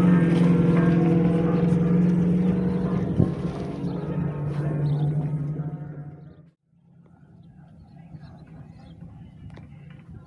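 A motor vehicle's engine running close by with a steady drone that drops a little in pitch, then cuts off abruptly about six and a half seconds in, leaving a faint outdoor background.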